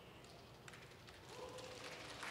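Near silence: faint room tone, with one tiny tick about two-thirds of a second in.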